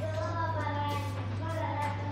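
A child's voice singing a song in held, sliding notes, over a steady low hum.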